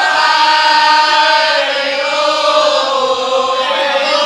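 Female voices singing a traditional Javanese song through microphones and a PA: one long, held, ornamented line that slowly dips in pitch and rises again near the end.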